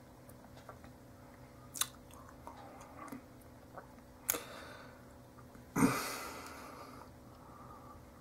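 Quiet mouth sounds of a person tasting beer: a few short sharp lip smacks, then a louder noisy burst about six seconds in that trails off over about a second.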